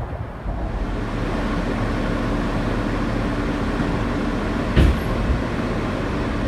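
Inside a moving New York City R160 subway car: steady running noise with a held hum, and one loud thump about five seconds in.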